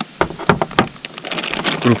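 A few sharp clicks of hard carp boilies knocking against plastic as they are handled, then a plastic bag rustling.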